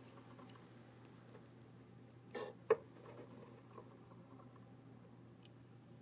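Quiet bench with a faint steady hum, broken about two and a half seconds in by a brief rustle and one light click from the hands working the soldering iron, solder wire and circuit board.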